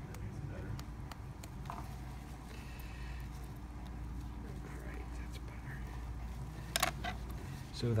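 Faint clicks and scrapes of dissecting instruments cutting tissue, over a steady low hum that stops near the end. One sharp click, about seven seconds in, is the loudest sound.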